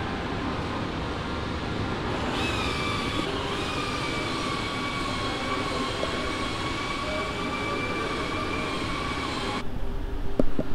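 Steady machinery noise in a trailer-building workshop. A high, steady whine comes in about two seconds in and holds until near the end.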